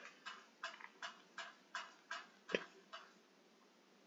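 Computer mouse scroll wheel clicking as the document is scrolled: a faint, even run of about eight clicks, roughly two to three a second, one a little louder near the end, stopping about three seconds in.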